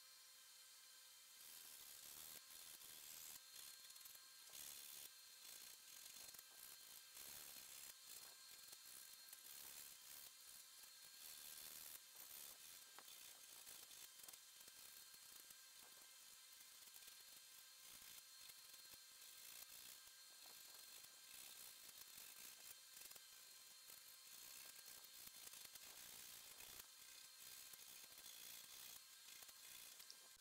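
Faint hand sanding: sandpaper rubbed in quick, irregular strokes along the edges of a wooden panel's cut-outs, a scratchy hiss that starts about a second and a half in.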